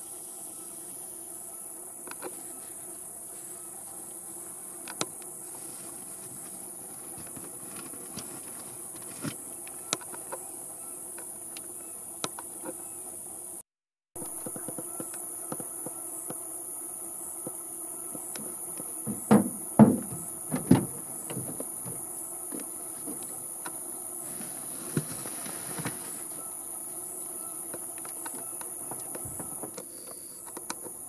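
Insects calling in a steady, high-pitched chorus, cut off briefly a little before halfway through. A cluster of loud knocks comes about two-thirds of the way through.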